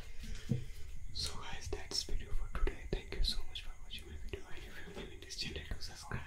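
A man whispering close to a condenser microphone, with crisp hissing on the s-sounds.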